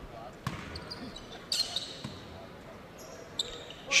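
A basketball bouncing a few times on a hardwood gym floor as a free-throw shooter dribbles before his shot, with faint voices and gym ambience around it.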